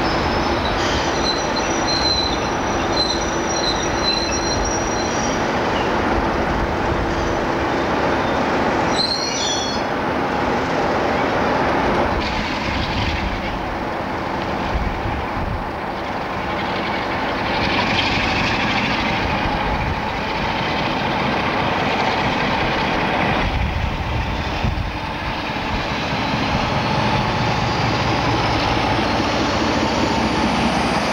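Class 37 diesel locomotives running at a station platform: the engine's steady drone with a high steady whistle over it, and a brief squeal of wheels on rail about nine seconds in. Near the end a faint rising whine as an InterCity 125 power car moves.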